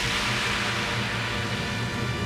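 Background music from a TV drama score, played over a steady rushing noise that fills the whole range.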